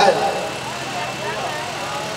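City street ambience: a steady low traffic hum with faint chatter from a crowd of onlookers.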